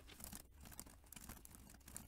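Faint computer keyboard typing: an irregular run of soft key clicks.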